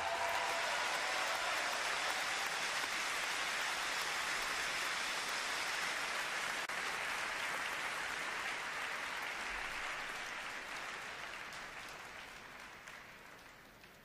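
Audience applause in an ice rink at the end of a skating program, steady at first, then dying away over the last few seconds.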